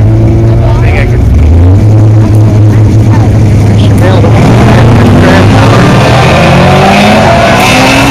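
Chevrolet Chevelle drag car's engine running loud at the start line, then launching and accelerating hard away, its pitch climbing through the second half.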